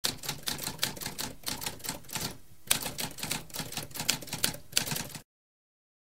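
Typewriter keys typing in a quick, uneven run of sharp clacks, about five a second. There is a brief pause around two and a half seconds in, then a louder strike, and the typing stops about five seconds in.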